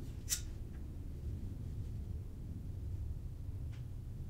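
Small clicks from wires and a hand tool being handled in a motorcycle headlight bucket: one sharp click about a third of a second in, then a faint tick just after it and another near the end, over a low steady background rumble.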